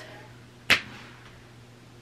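A single short, sharp smack about two-thirds of a second in, over quiet room tone with a faint steady low hum.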